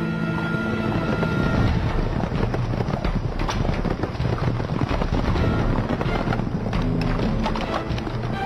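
Horses' hooves beating rapidly, a dense run of irregular hoofbeats, over background music.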